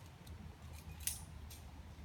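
A few sharp metallic clinks of climbing hardware, the loudest about halfway through, over a low steady rumble.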